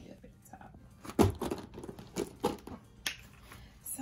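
Handling noise from a clear plastic zippered makeup pouch being lifted and set aside: a run of sharp clicks and knocks, the loudest a thump just over a second in.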